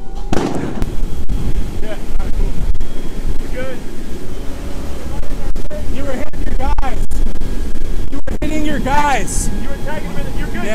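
Loud continuous rumble of a vehicle fire being hosed down, broken by sharp pops, with men's voices calling out around six to seven seconds in and again near nine seconds.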